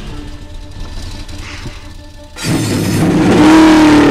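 Film soundtrack music mixed with car sounds, suddenly swelling much louder about two and a half seconds in.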